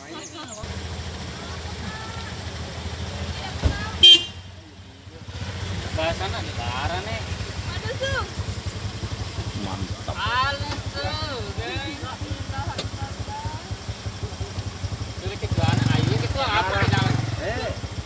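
A car engine idling close by, a steady low rumble, with a brief horn toot about four seconds in. Voices chatter in the background.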